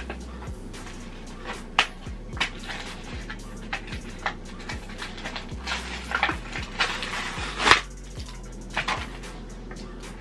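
Clear plastic blister packaging being peeled and torn by hand, giving irregular crinkles and clicks with one sharper snap about three-quarters of the way through. Low background music runs under it.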